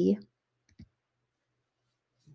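A woman's reading voice trails off at the start, then a single short click a little under a second in, followed by near silence.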